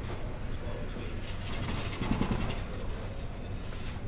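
Faint, indistinct speech over a steady low hum of room noise.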